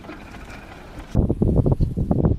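Quiet outdoor background hiss, then, about a second in, a sudden loud, rough, uneven buffeting of wind on the camera's microphone.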